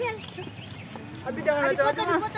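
Background voices of people talking, quieter than nearby speech, with a lull in the first second and talking picking up again past the middle.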